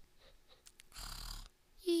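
A person voicing cartoon snoring for a sleeping character: a breathy snore about a second in, then near the end the start of a high, slightly falling "wee" on the out-breath.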